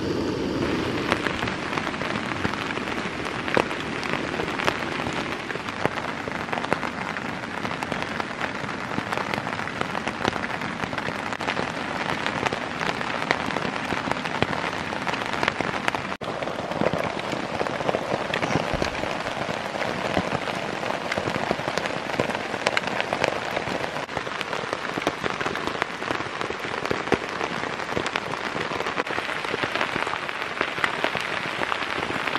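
Steady rain falling, a dense patter with many separate drop ticks.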